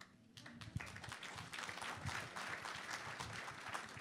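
Audience applauding. The clapping starts about half a second in and builds to a steady patter.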